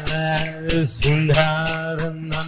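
A man singing a devotional chant, holding long notes that bend in pitch, while striking small brass hand cymbals (kartals) about three times a second, each strike ringing brightly.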